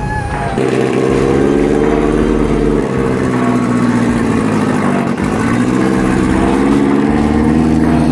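Engine of a 1948-built car pulling hard as it drives past on dirt. It comes in about half a second in, and its note sags around five seconds in, then climbs again.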